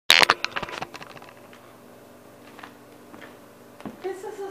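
A quick run of sharp clicks and knocks in the first second, then a faint steady hum with a few small clicks.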